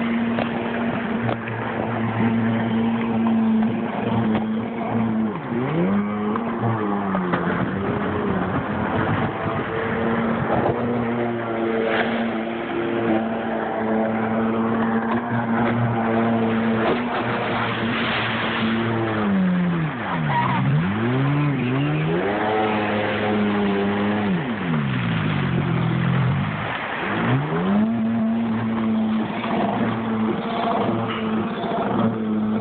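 Personal watercraft engine running at high revs over wind and water rush. Its pitch drops and climbs back several times as the throttle is eased off and opened again, most often in the latter part.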